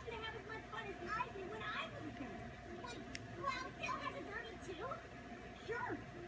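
Background television dialogue: several cartoon characters' voices talking and chattering, too indistinct to make out, over a faint steady hum.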